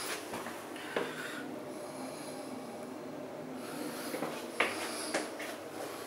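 Handling noise from a handheld camera in a small room: a steady background noise with a few sharp knocks, one about a second in and two close together near the end.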